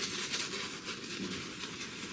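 Above The Tie S2 open-comb safety razor with a Gillette Red blade scraping through lathered stubble in a run of short strokes.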